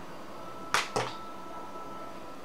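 Two sharp clicks about a quarter of a second apart, over a faint, steady high-pitched hum.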